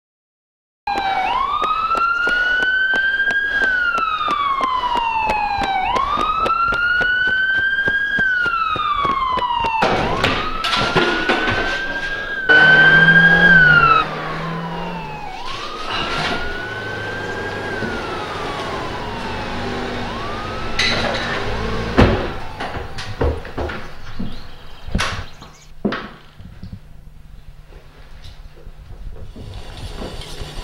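Emergency vehicle siren wailing, its pitch slowly rising and falling about every five seconds, loud at first and then fading. A loud low buzzing tone cuts in for a second and a half partway through, and a few sharp knocks sound near the end.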